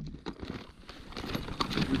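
Tools being rummaged through in a soft fabric tool bag: quiet rustling with scattered light clicks as the plastic socket case and other tools are shifted.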